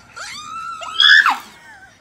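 A girl's high-pitched squeal that glides up and down, loudest about a second in.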